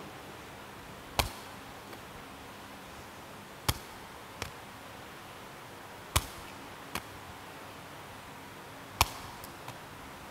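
A woven sepak takraw ball being headed upward four times, roughly every two and a half seconds, each contact a single sharp knock, with a fainter tap a moment after most of them as the ball is caught in the hands.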